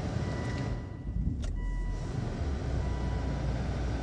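Volvo XC90 2.4 D5 five-cylinder diesel idling, heard from inside the cabin as a steady low rumble with a faint high whine. There is a single click about one and a half seconds in.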